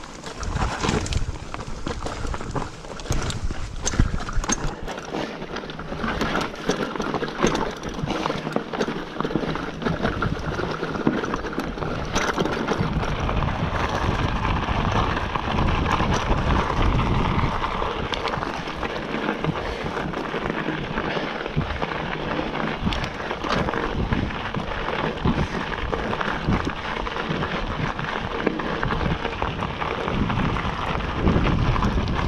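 Hardtail mountain bike riding over rocky trail and loose gravel: a steady rattle of rapid clicks and knocks from the bike's frame and parts, with tyres crunching over the stones.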